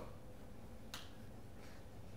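A quiet pause in room tone, broken by one faint, sharp click about a second in.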